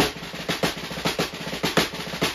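Six-stroke roll played fast with sticks on a snare drum: a dense, even run of strokes with pairs of louder accents coming about twice a second.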